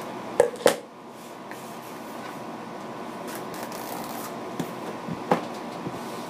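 Scissors snipping twice through the edge of a paper shipping package, two sharp cuts close together about half a second in, followed by quieter handling of the package with a few light taps.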